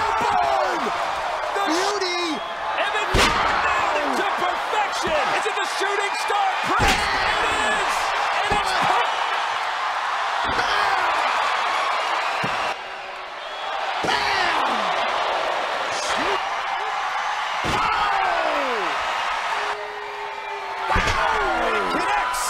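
Pro-wrestling ring impacts: a wrestler's body lands heavily on an opponent and the ring canvas again and again, a sharp thud every few seconds from a string of shooting star press splashes. A large arena crowd cheers and shouts throughout, rising after each landing.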